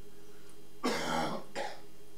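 A person clearing their throat: a rough burst about a second in, followed by a shorter one just after.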